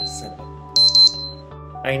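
Background music with steady held notes over a low pulse. A short, loud, high-pitched electronic ring or chime cuts in about three-quarters of a second in and lasts about a third of a second.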